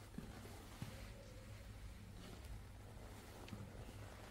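Quiet room tone with a steady low hum and a few faint, short clicks.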